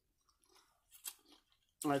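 Faint chewing of a mouthful of salad greens, a few soft wet crunches close to the microphone, before a woman's voice starts near the end.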